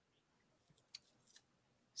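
Near silence: quiet room tone over a call microphone, with a faint click about a second in and a softer one near a second and a half.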